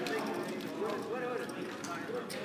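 Roulette chips clicking and clacking as the dealer handles them on the table layout, over a steady murmur of several voices.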